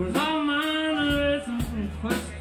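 A singer holding one long, slightly wavering note over a live rock band, the bass and drums mostly dropping out under it and coming back in near the end.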